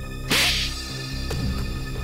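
A single hard slap across the face, a sharp crack about a third of a second in, over steady background music.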